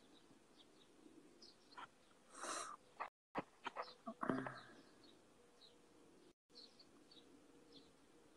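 A flying insect buzzing faintly near the phone, with short high bird chirps scattered through it. A few rustles and clicks come around the middle.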